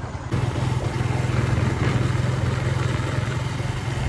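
Motorcycle engine running steadily while the bike is ridden along a road, with wind rushing past.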